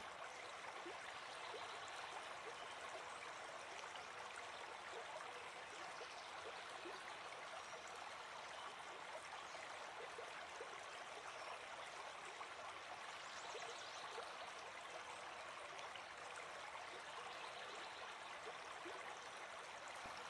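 Faint, steady sound of a running stream, with small scattered trickles.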